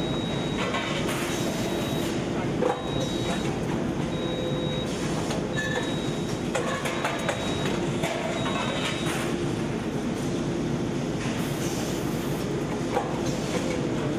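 Rotor aluminium die-casting machine running: continuous machinery noise with a thin high tone that comes and goes. Two bursts of hissing, about a second in and near the end, and a sharp knock about three seconds in.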